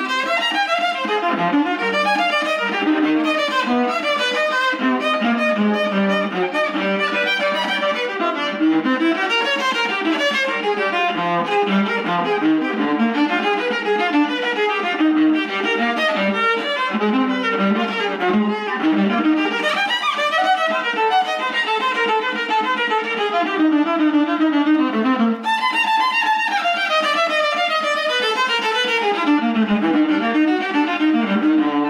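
Solo viola played with the bow in a fast, unbroken run of notes that climb and fall across the instrument's range, down to its low strings.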